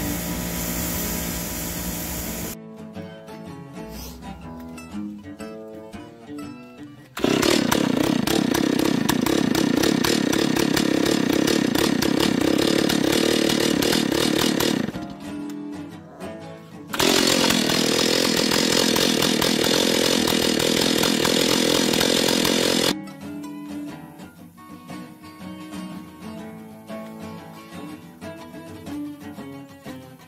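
A bench grinder's wheel grinds a spark plug for the first couple of seconds. After a stretch of background music, a chainsaw runs at full speed for about eight seconds, drops off briefly, then runs again for about six seconds before the music returns.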